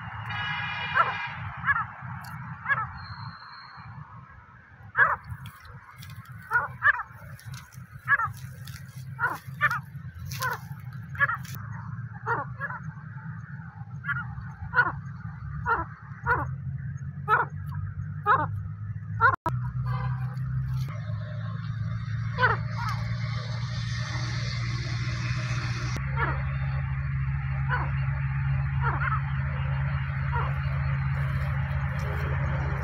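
Wild partridge (teetar) calling: short, sharp, downward-sliding notes repeated roughly once a second, sometimes in quick pairs, over a low steady hum.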